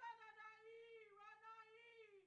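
A woman's high voice, faint, singing in two long, wavering held phrases with no words: a message in tongues that is then to be interpreted, as in a Pentecostal service.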